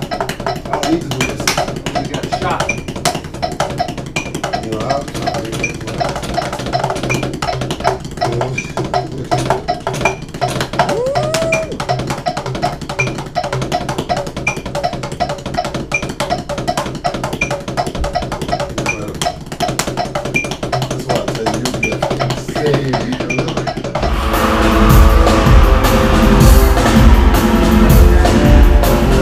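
Rapid, continuous drumming on a backstage practice drum kit, with music in the background. About 24 seconds in it cuts to a loud live rock band playing.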